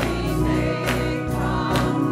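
Gospel choir singing with instrumental accompaniment over a steady beat of about two strikes a second.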